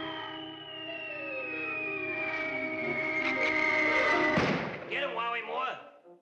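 Cartoon falling-whistle sound effect: one long whistle gliding steadily downward over orchestral music, the sign of something dropping from a height. It ends in a thud about four and a half seconds in, followed by brief voice sounds.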